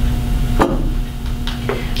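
Steady low room rumble and hum, broken by three short light knocks: one about half a second in and two close together near the end.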